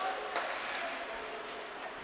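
Ice hockey rink ambience during live play: a steady wash of noise from skates on the ice and the arena, with one sharp click about a third of a second in.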